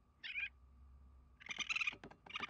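Cartoon skunk's high-pitched squeaky calls: a short chirp about a quarter second in, then a longer chittering call near the end.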